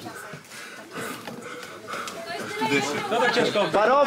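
Voices only: low chatter among onlookers, then a man's voice calling out louder in the second half.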